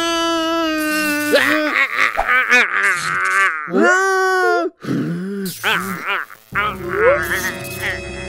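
Cartoon characters' wordless voices: a long held wailing scream, then excited gibberish babble and a second drawn-out cry. Music comes in with whooping vocal glides near the end.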